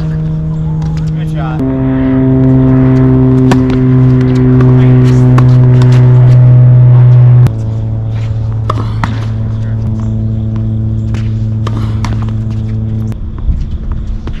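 A loud, steady motor drone whose pitch jumps abruptly a couple of times. Over it come sharp knocks of tennis balls being struck.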